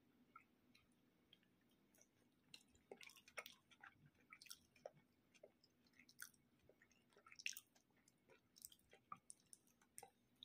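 Faint, scattered crackling and crunching of a sugar-crusted Japanese jelly candy being torn apart by fingers, with a cluster of small crackles about three seconds in and the loudest crack about three-quarters of the way through.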